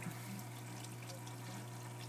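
Water from an aquarium overflow pipe pouring and trickling steadily down into a DIY trickle-tower sump filter, over a steady low hum.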